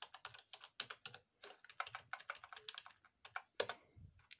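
Typing on a computer keyboard: a quick, irregular run of light keystrokes as a search query is entered.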